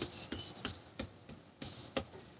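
High-pitched bird chirps, a few short falling calls, with soft, quick taps of fingertips knocking on the middle of the breastbone in the first second.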